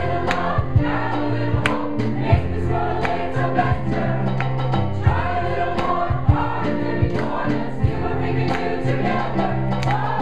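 A mixed choir of men and women singing held chords in parts over a low bass line. A few sharp clicks sound through the singing.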